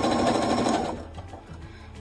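EverSewn sewing machine running a fast, steady straight stitch, sewing a chenille strip onto the quilt edge, then stopping about a second in.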